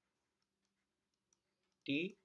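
Near silence broken by a single faint click just over a second in: a stylus tapping on a drawing tablet while an equation is handwritten on screen.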